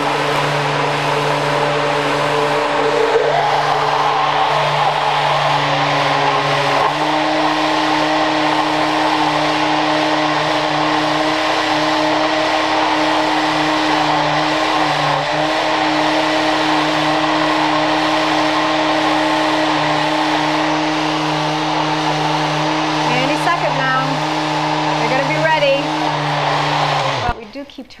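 Countertop blender motor running steadily under load while it churns a thick banana and sunflower-seed batter. Its pitch steps up slightly about seven seconds in, and it is switched off near the end, the thick mix straining the motor.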